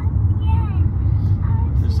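Steady low rumble of a moving car heard from inside the cabin, with faint voices over it.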